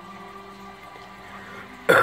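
Faint film soundtrack playing from a television, then near the end a loud, close voice breaks in with an "Oh" and the start of a laugh.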